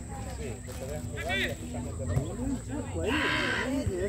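Distant shouts and calls of players and onlookers across an open football pitch, several voices overlapping, with a brief hissing burst near the end.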